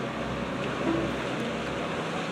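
Rescue boat's engine running with a low, steady rumble.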